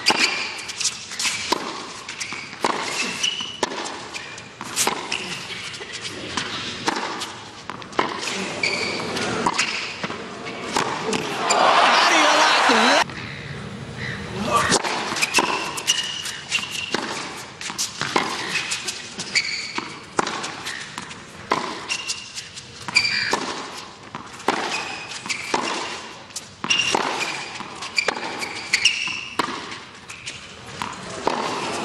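Tennis ball struck by rackets in baseline rallies on a hard court: a long series of sharp pocks, with short high shoe squeaks in between. A brief burst of crowd noise about twelve seconds in.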